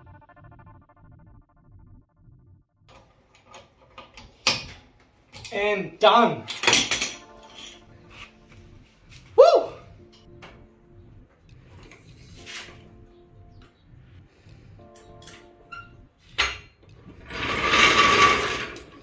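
Background music with scattered metallic clicks and clunks from a trolley floor jack being worked under the rear of a car and let down, the loudest burst coming near the end.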